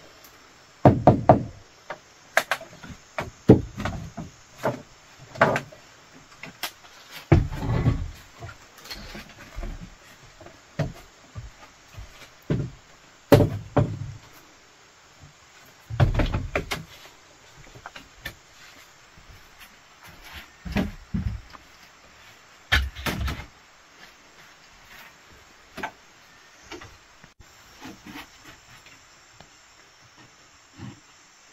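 Irregular knocks, clatters and rattles of bamboo and wood being handled and fitted into place, with a heavier thump every few seconds.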